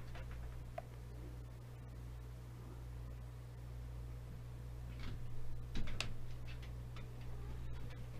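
Quiet room with a steady low electrical hum and a few soft clicks and taps as the handheld frequency counter is held and handled while it boots. Two of the clicks are a little louder, about five to six seconds in.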